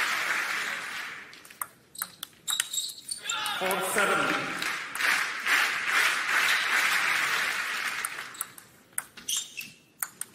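A few sharp table tennis ball clicks off bats and table in a short rally. An arena crowd then cheers and shouts for a few seconds, and a few more ball clicks come near the end.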